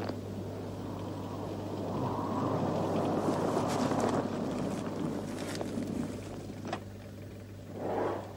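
A vehicle's engine drawing near: its noise rises over a couple of seconds and eases off again, over a steady low hum.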